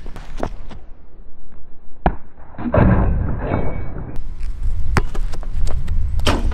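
Basketball bouncing on an outdoor asphalt court, with scattered sharp thuds and footsteps at irregular intervals as the player dribbles in to dunk. A steady low rumble of wind on the microphone runs underneath.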